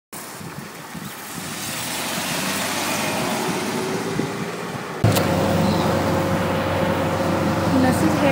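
Road traffic noise: a steady rush of passing cars that grows louder over the first two seconds. About five seconds in it cuts off suddenly with a click to a steady low hum.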